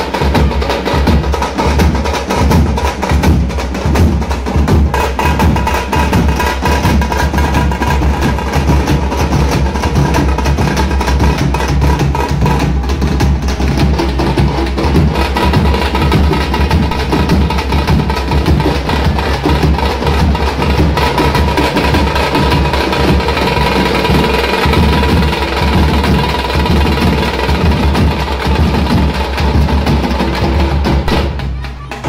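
A group of tamte, the round frame drums of Karnataka folk music, beaten with sticks in a fast, loud, unbroken rhythm.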